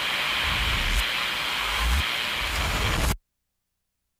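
Loud, rain-like static noise effect with deep booms about one and two seconds in, cutting off suddenly into silence a little after three seconds.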